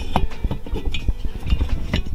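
Finned aluminium Puch Maxi cylinder being handled and turned over the bench, giving a few light metallic clinks and knocks.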